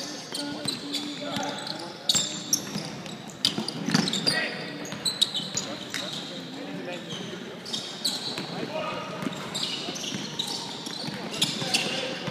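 Pickup basketball game on a hardwood gym floor: a basketball bouncing with sharp knocks, players' sneakers on the court, and players' voices calling out, all echoing in the large hall.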